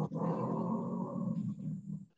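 Garbled, distorted voice audio over a video call, breaking up on a poor connection into a continuous low, grainy noise.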